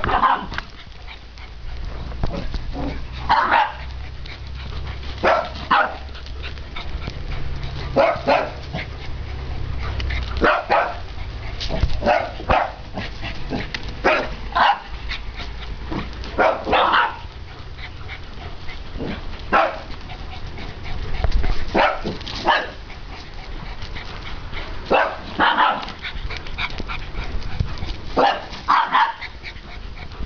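Dogs at rough play, one barking in short, separate barks every second or two.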